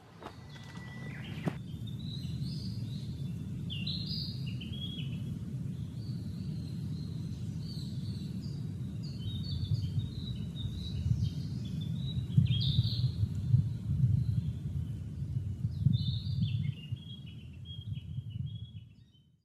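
A small songbird singing repeated short phrases of high notes that step downward, over a steady low rumble.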